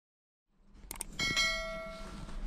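Subscribe-button sound effect: two quick mouse clicks about a second in, then a bright notification-bell ding that rings on and slowly fades. A low background rumble fades in under it from about half a second.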